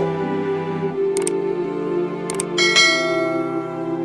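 Soft background music with a subscribe-button sound effect over it: two short mouse clicks about one and two seconds in, then a bright bell-like notification chime that rings and fades.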